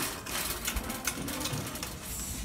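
Irregular clicking and rustling from a handheld phone being moved about close to the microphone, with fabric brushing against it.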